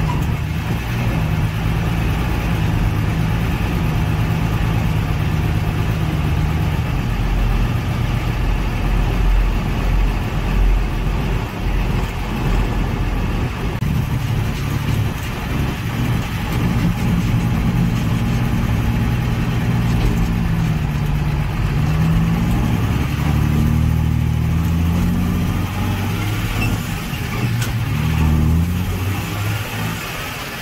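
Dump truck's diesel engine running on the road, towing a loaded-capable tag trailer, its note rising and falling a few times in the second half as it speeds up and shifts.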